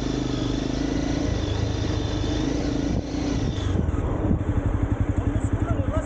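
Red sport motorcycle's engine running as the bike rides along a wet road at low speed, heard from the rider's helmet camera with wind rushing over the microphone. About halfway through the wind hiss drops away and the engine settles into an uneven, pulsing low beat as the bike slows.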